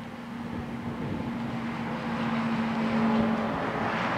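Motor engine running with a steady hum, its noise building to a peak about three seconds in and then easing off.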